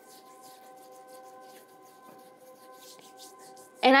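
Faint soft rubbing of oily fingers and palms massaging cleansing oil over facial skin, under a steady faint hum of several held tones.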